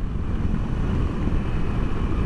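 Moto Guzzi V85TT's air-cooled transverse V-twin running with its exhaust note, heard from the saddle through wind noise on the microphone.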